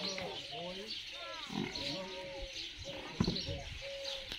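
Indistinct men's voices talking, mixed with an animal call, and a single sharp thump about three seconds in.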